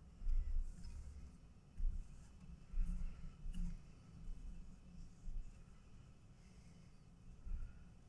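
Faint, irregular rustling and soft bumps of nylon paracord being threaded and pulled by hand through a bracelet weave.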